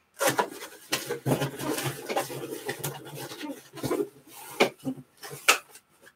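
Cardboard case and shrink-wrapped boxes being handled: a few seconds of rustling and scraping, then several sharp knocks near the end.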